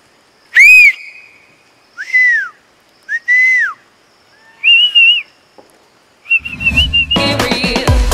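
A series of loud whistled calls, each a short glide up and then down in pitch, the later ones wavering and trilled. Music with a steady beat comes in near the end.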